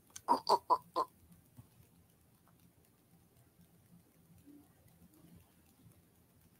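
A person's voice imitating a stomach grumbling: four quick, short sounds packed into about a second, followed by faint room tone.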